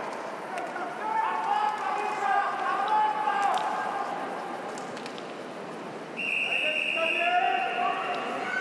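Swimming-arena crowd noise with a public-address announcer's voice introducing the swimmers one by one. A steady high tone joins about six seconds in.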